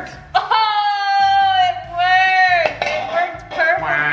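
A voice singing a long held "aah" note for about a second, then a second shorter note that sags in pitch at its end.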